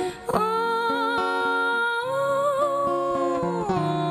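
A woman's voice holds one long wordless note with vibrato, stepping up in pitch about halfway and sliding down near the end, over fingerpicked acoustic guitar. A short break comes just before the note starts.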